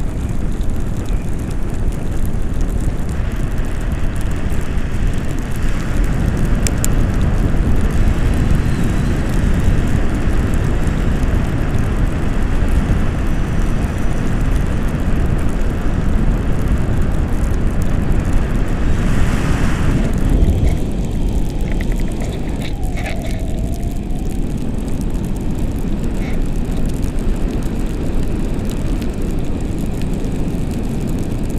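Wind rushing over an action camera's microphone as a tandem paraglider flies: a loud, steady low rumble of airflow. A brief surge about twenty seconds in, after which it settles a little quieter.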